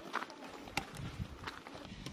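Footsteps on loose gravel and stones, a few irregular sharp clicks over a quiet hiss, with some rustling in the second half.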